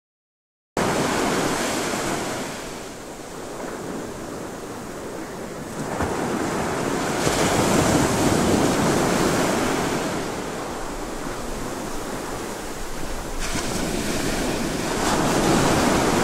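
Sea surf and wind buffeting the microphone: a steady rushing that starts abruptly about a second in and swells and eases, with a few sudden shifts in tone.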